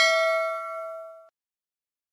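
Bell-ding sound effect ringing out with several clear tones and fading away. It stops about a second and a quarter in.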